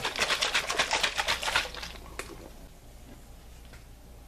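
A fast clicking rattle, about ten clicks a second, for the first two seconds, then one more click and the sound dies away.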